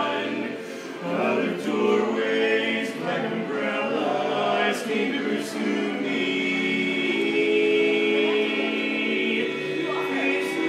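Barbershop quartet of four men's voices (tenor, lead, baritone, bass) singing a cappella in close harmony. The chords change often early on, then one chord is held from about six seconds in until near the end.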